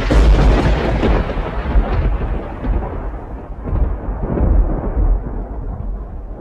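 A thunder-like rumble sound effect: it hits suddenly with a deep, heavy low end and then slowly dies away over several seconds.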